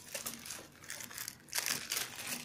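Clear plastic bag crinkling as hands handle the paper instruction booklet and warranty card inside it. The crackling is irregular and grows louder near the end.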